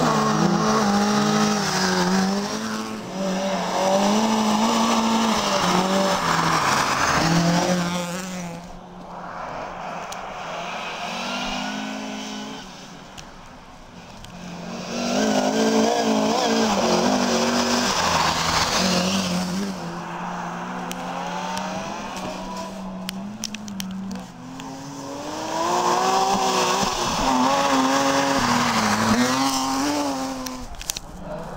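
Rally cars on a snowy special stage, engines revving hard, the pitch climbing and dropping with each gear change and lift. The sound swells loud in several surges as cars approach and go by, with quieter gaps between.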